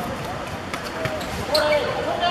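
A football being kicked and knocked about on a hard court, with several short sharp knocks in the first half. Players call out over it in the second half.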